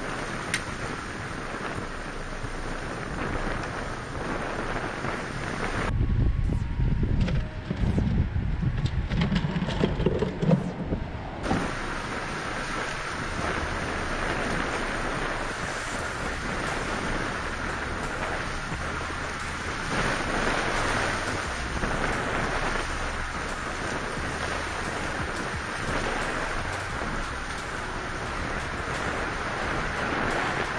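Wind blowing across the camera microphone, a steady rushing noise, with heavy low rumbling buffeting from about 6 to 11 seconds in.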